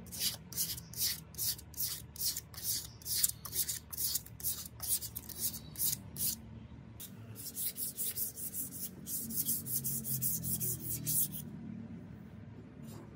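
Sandpaper rubbed by hand along a wooden knife handle: brisk back-and-forth sanding strokes, about three a second, quickening in the second half and stopping shortly before the end.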